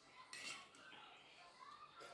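Faint slurping of curry-like broth from a spoon, with a short, sharp slurp about half a second in and light spoon-on-bowl sounds.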